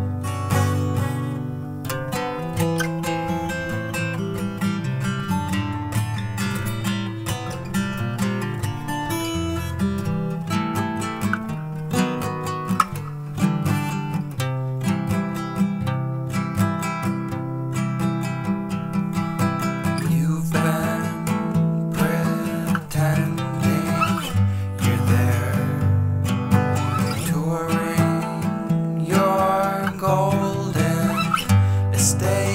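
Instrumental passage of a song, led by strummed acoustic guitar playing in a steady rhythm.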